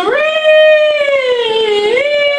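A man singing one long, high held note with no words. It slides up at the start, sags slowly in pitch, and climbs again near the end.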